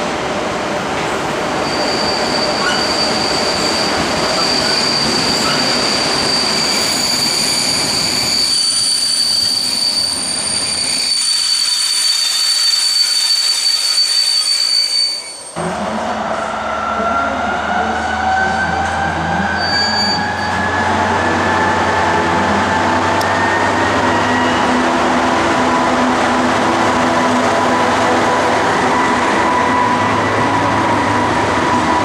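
ČD class 854 diesel-hydraulic railcar with steady, high-pitched wheel squeal as it rounds a curve. About halfway through, its diesel engine and transmission take over, with a whine that climbs steadily in pitch as it speeds up.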